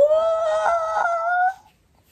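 A woman's high-pitched, drawn-out "ooh" of delight, held for about a second and a half with its pitch creeping slightly upward, then stopping.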